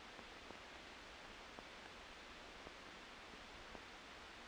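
Near silence: the faint steady hiss of an old film soundtrack, with a few faint ticks about a second apart.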